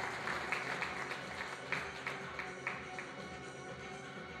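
Audience clapping over steady background music; the claps thin out to a few scattered ones and stop about three seconds in.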